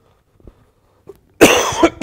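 A man coughing: a loud bout of coughs that starts about one and a half seconds in and carries on past the end.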